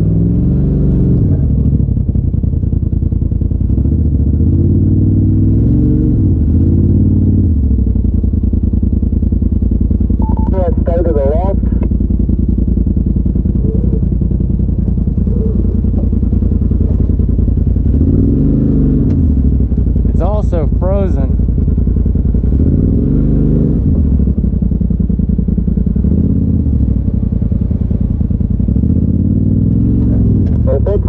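Polaris RZR side-by-side engine running under the cab, the revs rising and falling about five times as it is throttled up over rock ledges, with brief voices twice in the middle.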